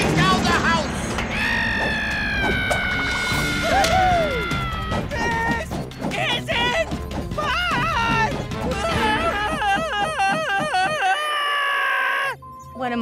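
Cartoon fight soundtrack: music under a run of crashing and whacking hits, with drawn-out wavering yells and screams, the longest of them in the last few seconds.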